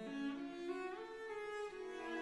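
Classical music played by an orchestra, its bowed strings holding long notes that step to new pitches every half second or so.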